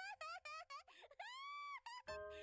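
A young girl's very high-pitched cartoon voice, heard faintly: a quick run of short syllables, then one long drawn-out note near the end, over a faint steady musical tone.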